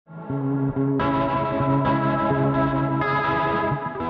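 Electric guitar played through effects pedals: held chords that ring on and change about once a second, fading away near the end.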